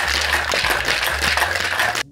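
Ice being shaken hard in a Boston shaker, a metal tin sealed onto a mixing glass. It makes a fast, continuous rattle of ice against the tin.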